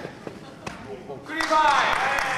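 A few sharp thuds on the wrestling ring's canvas during a quieter stretch, then a loud voice calling out about one and a half seconds in, its pitch falling.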